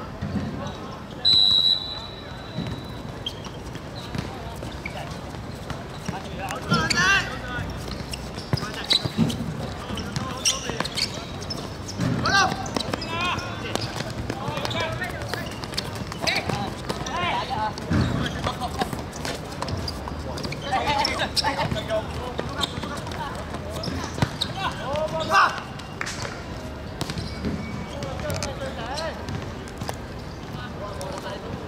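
A referee's whistle gives one steady blast about a second in, starting play. Then players shout and call to each other across the pitch, with the occasional thud of the football being kicked.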